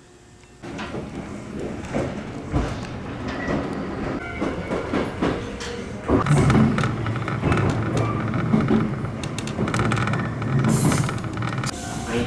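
Iyotetsu electric commuter train running, heard from inside the car: a steady low hum from the running gear with many short clacks of the wheels over the rails, getting louder about six seconds in.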